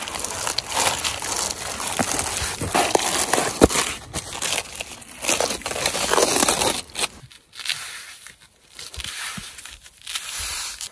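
Plastic backing strip being peeled off the self-adhesive seam of foam pipe insulation, with a continuous crinkling and crackling that thins out about seven seconds in.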